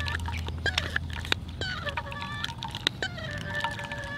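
Handheld portable espresso maker being pumped by hand, with irregular clicks from the pump as espresso runs into a steel mug. Thin held tones sound behind it.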